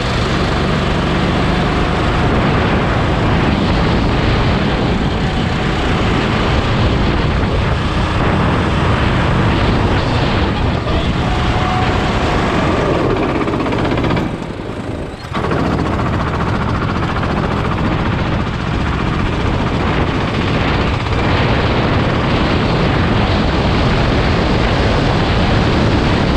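Rental go-kart engine running under load at speed, heard close up with wind rushing over the microphone. Near the middle the sound briefly drops away for about a second, then picks up again.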